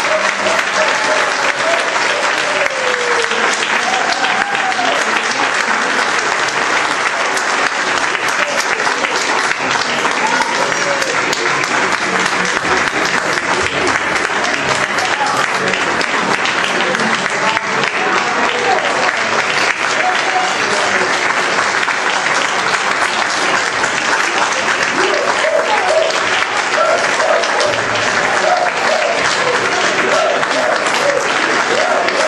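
Audience applauding steadily for a long stretch, with voices talking underneath, louder near the start and near the end.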